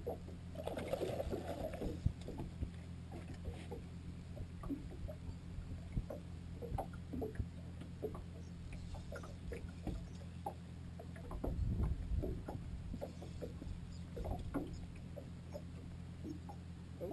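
Sounds of a small fishing boat on the water: a steady low hum with many small light taps and knocks, and a louder low rumble about twelve seconds in.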